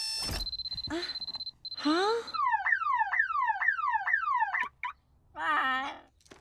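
An electronic alarm beeping on a steady high tone, then a siren-like wail that sweeps down and up about twice a second, like a car alarm. Short vocal squeaks come between them, and a brief vocal sound comes near the end.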